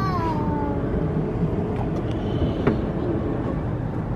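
A young girl's high squeal that glides down in pitch over about a second, followed by steady low background noise.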